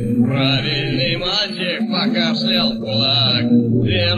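A cappella male singing with several voice parts layered: a sustained low held note under higher moving vocal lines, with no instruments.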